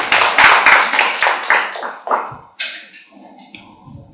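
Audience applauding with quick, even claps, dying away about two seconds in.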